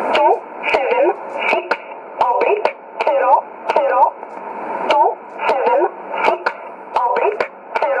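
Shortwave numbers station E11 'Oblique': a voice reading numbers in English, one syllable after another, heard through a radio receiver's narrow, tinny passband. Sharp static crackles break in now and then.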